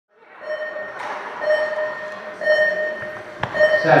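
A pitched beeping tone repeating about once a second, each beep roughly half a second long, over steady hall noise, with a sharp click shortly before the end.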